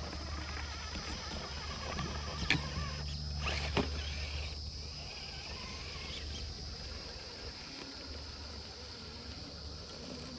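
Radio-controlled rock crawler truck driving over dirt and onto rock, with a couple of sharp clicks near the middle and a low steady rumble that fades after about seven seconds. Insects trill steadily in the background.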